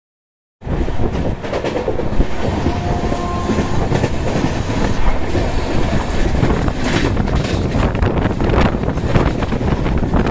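A moving passenger train heard from its open doorway: the coach makes a loud, steady running noise on the track. The sound starts suddenly about half a second in, after silence.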